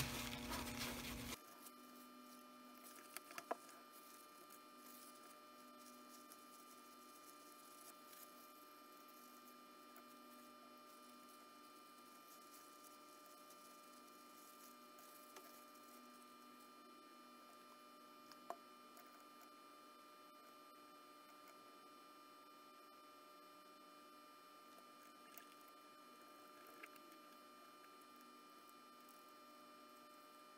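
Near silence: a faint steady electrical hum, with a few faint clicks. A brief faint noise in the first second or so cuts off suddenly.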